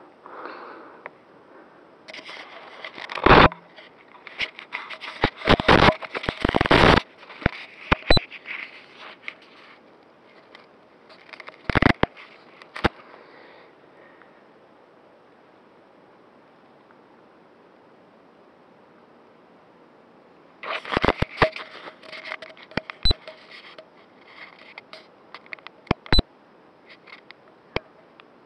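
Close handling noise on a Runcam 2 action camera: bursts of scraping, rubbing and sharp knocks against its body, in two clusters with a quiet stretch of several seconds between them.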